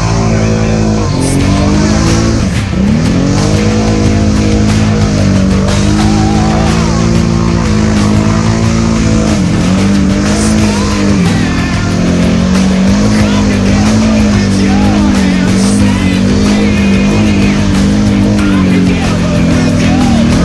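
Can-Am 570 ATV engines revving hard while pushing through deep mud, the pitch dropping and climbing again a couple of times, with rock music playing over it.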